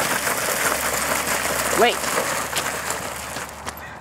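Bicycle tires dragged by a pulling dog scraping along the ground, a steady rough noise that dies away near the end as the dog stops.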